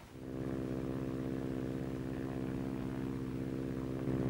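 A de Havilland Chipmunk's four-cylinder Gipsy Major engine running in flight, a steady drone with a fast even pulse. It fades in just after the start.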